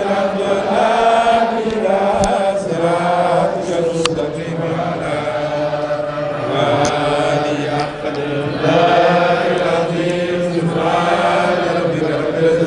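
Men chanting an Arabic devotional poem in praise of the Prophet Muhammad, in long drawn-out melodic phrases, with a short click about four seconds in.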